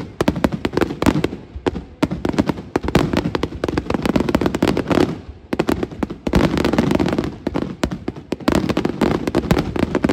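Fireworks display: aerial shells bursting in a dense, near-continuous barrage of loud bangs and crackling, many reports a second. The barrage eases briefly about two, five and a half and eight seconds in.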